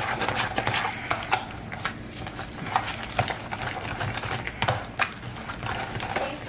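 Kitchen masher mashing and stirring guacamole in a plastic bowl: irregular taps and clicks of the masher against the bowl, with soft mashing of the avocado.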